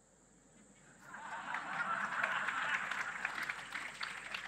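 Audience applauding, starting about a second in, after a joke; the clapping swells and then thins out.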